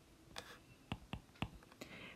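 Stylus tapping and ticking on a tablet's glass screen while writing a letter: a few light, separate clicks spread over the two seconds.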